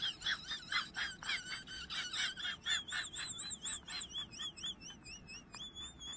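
A dog whining in high, wavering tones over quick, rhythmic panting breaths, the whines turning longer and steadier near the end.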